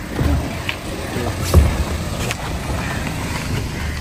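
A car driving slowly past at close range, its engine and tyres a steady low rumble that swells about a second and a half in, with footsteps on pavement.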